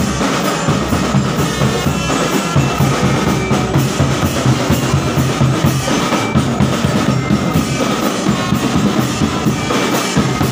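Marching drum band playing in the street: snare drums and bass drums beating a steady, loud rhythm.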